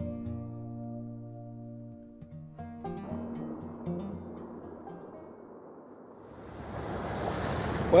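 Acoustic guitar music fading out over the first few seconds, giving way to a steady rush of wind and sea on the microphone aboard a sailboat at sea, which grows louder towards the end.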